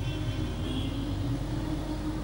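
Steady low background rumble and hum, with no distinct events.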